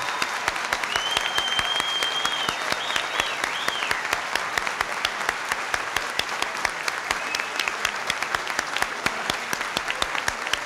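An audience applauding steadily. A thin, high held tone sits above the clapping for about a second and a half, starting about a second in, then wavers briefly a few times.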